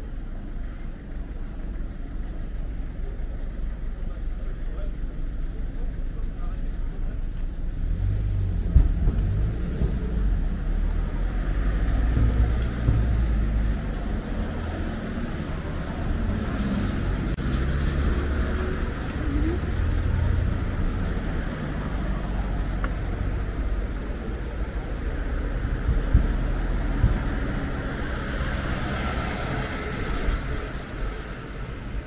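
City street traffic, with cars driving past. It grows louder for a stretch in the middle and then eases off.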